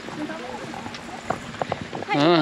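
Quiet talking between people walking, with a few sharp footsteps on a paved path near the end.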